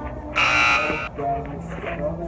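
A loud, harsh buzzer sounds once for under a second, about a third of a second in, in the manner of a game-show buzzer marking a failed attempt; a voice speaks around it.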